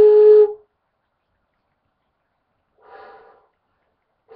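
Handmade end-blown flute sounding a clear, steady single note for about half a second as the breath is split on the semicircular edge of the mouthpiece. About three seconds in comes a brief, much fainter breathy blow.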